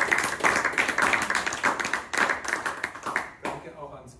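Applause from a small audience, a dense patter of many hands clapping that stops about three and a half seconds in.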